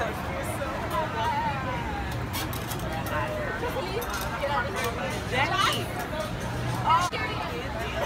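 Background chatter of several people's voices, none of it clear, over a steady low hum, with a brief louder voice about seven seconds in.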